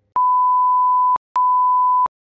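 Censor bleep: a steady single-pitched beep, sounded twice (about a second, a short gap, then just under a second), masking a swear word in a recorded voice message.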